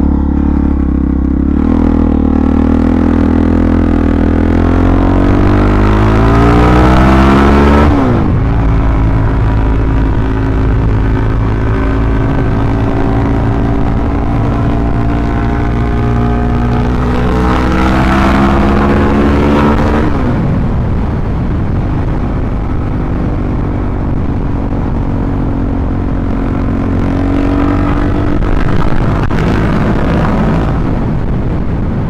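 Suzuki DR-Z400SM's single-cylinder four-stroke engine pulling on the road, its pitch climbing for several seconds and dropping sharply about eight seconds in, then climbing again and falling back near twenty seconds before holding steady. Wind rush on the helmet mic runs underneath.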